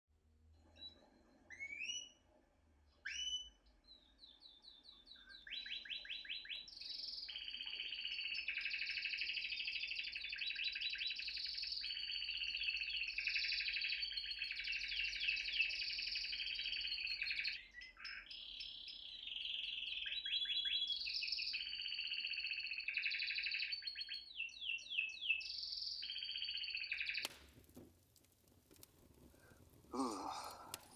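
Canary singing: a few short chirps, then long rolling trills and warbles that run on, with one brief break about 17 seconds in. The song cuts off about 27 seconds in, giving way to a short rush of noise.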